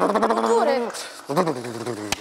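A man vocally imitating a car engine that won't start: a buzzing, sputtering engine noise made with the voice that sinks in pitch and dies away, then a second short falling sputter.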